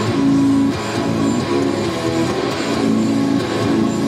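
Jackson Juggernaut HT6 six-string electric guitar played through a Horizon Devices Precision Drive, MXR 5150 pedal, Echoplex delay and reverb into a Mesa combo amp: a continuous line of picked notes, each held briefly before the pitch moves on.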